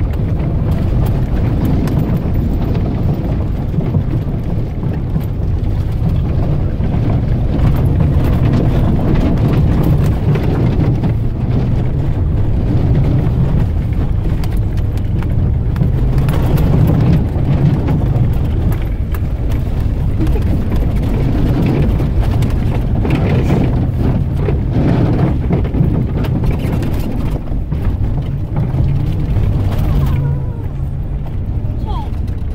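A pickup truck driving slowly through tall weeds over rough ground, heard from inside the cab: a steady low rumble of engine and tyres, with irregular rustling and slapping as plants brush against the body and windshield.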